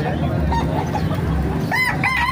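A rooster crowing, its call starting near the end, over a steady low background rumble.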